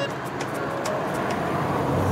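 Street traffic noise, with motorcycle engines passing by.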